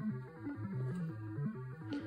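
Eurorack modular synthesizer sequence playing at a low level: a quick run of short bass notes stepping up and down in pitch.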